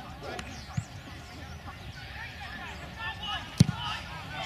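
A rugby ball struck off the ground in a place kick at goal: one sharp thud of boot on ball about three and a half seconds in, over faint distant voices.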